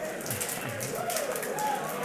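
Crowd of men on their feet, talking and calling out over scattered sharp hand slaps and claps from high fives being exchanged.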